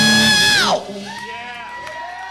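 Live heavy metal band finishing a song on a held high note that bends downward and cuts off under a second in. Then the audience whoops and shouts.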